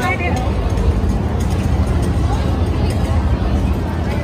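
Busy crowd of people talking over a steady low rumble.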